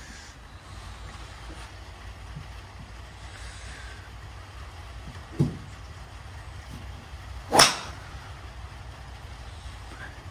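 A driver striking a golf ball off a driving-range mat: a single sharp crack about two and a half seconds before the end, the loudest sound. A softer short thump comes a couple of seconds earlier, over a steady low background rumble.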